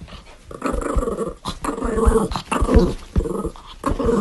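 Small dog growling in a run of short bursts, with a few low thumps mixed in.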